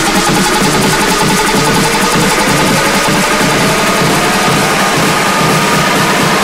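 Electronic dance music played loud by a DJ, with a dense fast beat under a synth tone that rises steadily in pitch, like a build-up sweep.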